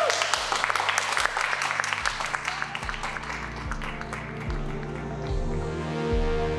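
A small group applauding, the claps dense at first and thinning out and fading by about halfway, with background music whose low, steady beat comes in about two seconds in and carries on to the end.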